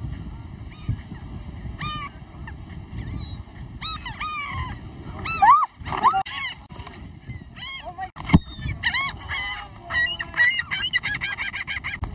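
A flock of gulls calls and squawks overhead, short cries that grow more frequent and overlapping toward the end. Wind rumbles on the microphone underneath, and there is one sharp click about two-thirds of the way through.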